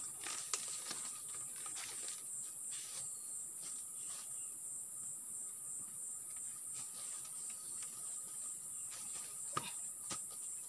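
A steady, high-pitched chorus of forest insects with a fast pulsing, over scattered crackles and knocks as a bundle of firewood sticks is handled and hoisted and feet shift on dry leaf litter. There is one sharper knock near the end.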